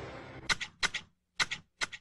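Hand pruning shears snipping four times, each cut a sharp double click, with silence between the cuts.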